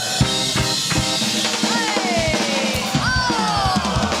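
Live rock band music: a drum kit keeping a beat with kick and snare under electric guitar, bass and keyboard. Long lead notes slide down in pitch twice, in the second half.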